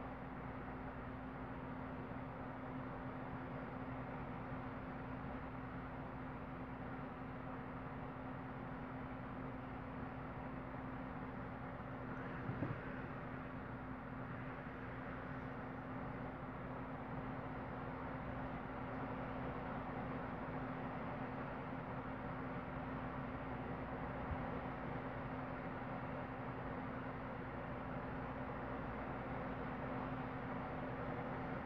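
Steady background hum with a low droning tone over a light hiss, and a single brief click about twelve seconds in.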